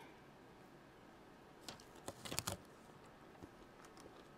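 Faint, quiet crunch of a crispy air-fried french fry being bitten: a few short crackles about two seconds in, otherwise near quiet.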